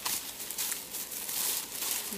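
Paper crinkling and rustling, an irregular run of small crackles, as a wrapped gift is handled and unwrapped.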